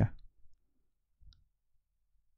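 A man's voice ending the word "ya", then near silence broken by a single faint click about a second and a quarter in.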